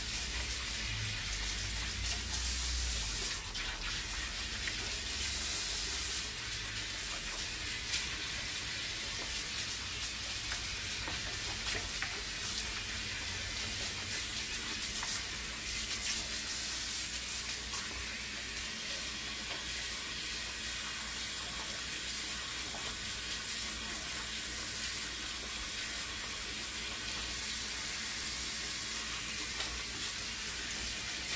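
Salon shampoo-basin spray hose running steadily, water hissing onto a client's hair and into the basin as the hair is rinsed.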